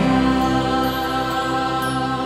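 The final chord of a sung religious hymn, held long and slowly dying away.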